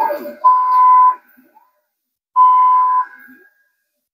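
xTool D1 diode laser engraver's gantry stepper motors moving the laser head to frame the job: a short gliding whine, then two steady high whines, each under a second and about two seconds apart.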